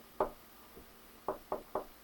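A few light knocks on a tabletop where a felt-tip pen is drawing on paper: one a fifth of a second in, then three quick ones a little over a second in.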